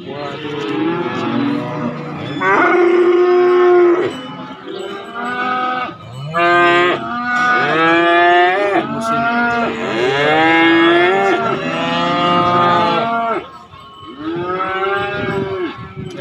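Several cattle mooing loudly, long drawn-out calls that overlap one after another, with a brief pause near the end before another call.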